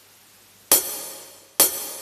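Karaoke backing track opening with two cymbal strikes about a second apart, in time with the slow beat, each ringing away. A faint hiss and low hum lie underneath.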